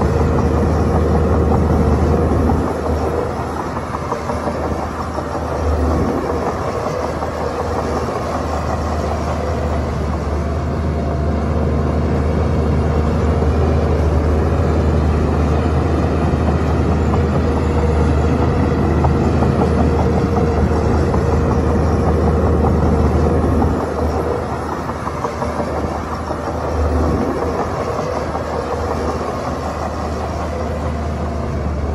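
Shantui DH17C2 bulldozer's diesel engine working under load while pushing soil, a steady heavy engine sound that eases off for a few seconds about three seconds in and again near the end.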